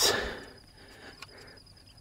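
Faint, steady, high-pitched insect trill in the background, with a soft click about a second in.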